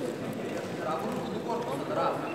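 Indistinct background talk of several people, with no clear words.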